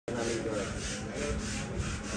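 Rhythmic rubbing strokes, about four a second, over a steady low hum, with faint voices behind.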